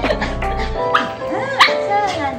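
Bichon Frise dog whining and yipping in excitement at greeting a familiar person, one high rising-and-falling cry peaking about a second and a half in, over background music.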